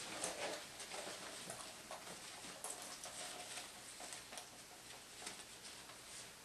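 Faint handling noise of a US M24 aircraft gas mask being pulled on over the head: the rubber facepiece and straps rustle, with scattered light taps and clicks.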